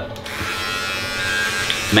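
Handheld electric hair trimmer switched on just after the start and running with a steady buzz.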